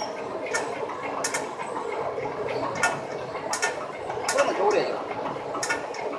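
Fabric inspection and measuring machine running as it rewinds a roll of lining fabric over its rollers, a steady mechanical hum with sharp clicks at uneven intervals of roughly a second.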